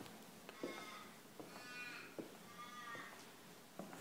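Faint footsteps on a hard floor, with three faint drawn-out pitched sounds, each about half a second long, in the background.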